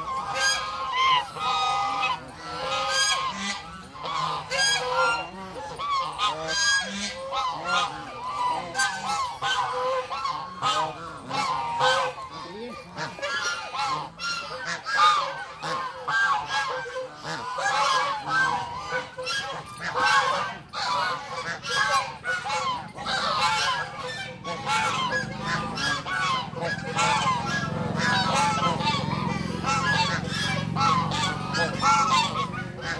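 A flock of white domestic geese honking continuously, many calls overlapping into a steady clamour.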